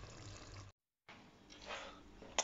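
Faint bubbling of a pot of chicken stew simmering on low heat, broken by a moment of dead silence just under a second in.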